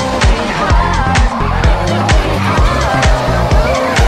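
A rally car's engine revving and its tyres squealing as it drifts, mixed with loud music that has a steady dance beat.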